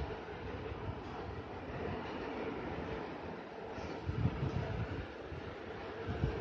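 Scissors cutting through folded saree fabric, with the cloth rustling under the hand that holds it flat, over a steady rumbling background noise; a few dull knocks about four seconds in.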